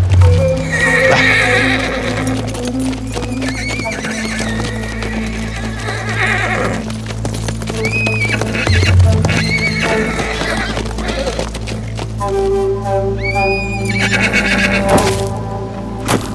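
A group of ridden horses, with hoofbeats and horses neighing several times, set over a dramatic score with a steady low drone.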